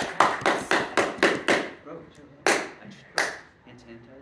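A small group applauding: a quick run of overlapping claps that dies away after about a second and a half, followed by two separate sharp sounds.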